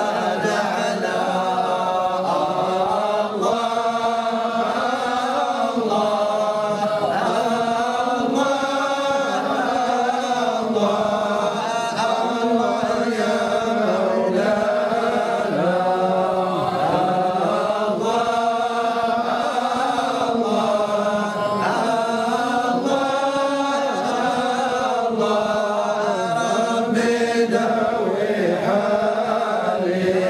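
A group of men chanting together without instruments, a slow melodic Sufi devotional chant held as one continuous, gliding line of voices.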